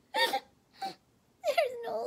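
A woman's voice acting out sobbing in a storybook voice, not real crying: two short sobs, then from about a second and a half in a long wail that wavers up and down in pitch.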